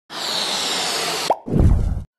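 Cartoon sound effects: a steady hiss lasting about a second, then a short rising blip and a puff of low, noisy sound that fades out.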